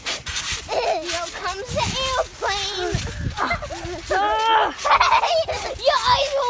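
Children shrieking, squealing and laughing in high voices with no clear words, over sharp knocks from bouncing on a trampoline mat.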